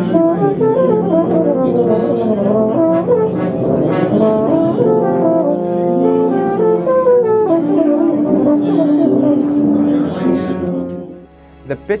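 Yamaha Neo (YEP-642S II) euphonium played in its upper register: quick runs of notes, then a held note, stopping about a second before the end. The high notes centre easily and sound clear.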